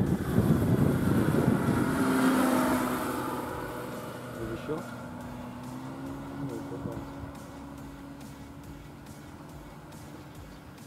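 Sherwood Ranger light biplane's engine and propeller passing low overhead, the engine note dropping in pitch as it goes by, then fading steadily as the aircraft flies away.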